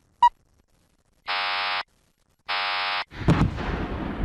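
Ballistic missile launch: a short sharp beep and two half-second buzzes of the launch alarm, then the rocket engine ignites about three seconds in, its noisy rush with sharp cracks building as the missile leaves the pad.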